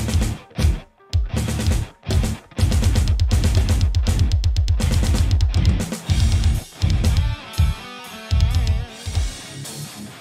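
A metal band plays an instrumental song intro on drum kit and heavy distorted guitar: first stop-start hits played together, then, about two and a half seconds in, a steady fast pounding run of kick drum and guitar. Near the end the playing opens up and a melodic line with bending notes comes in.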